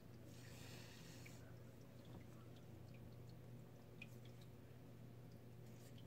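Near silence: room tone with a steady low hum and a few faint ticks from crocheting yarn with a hook.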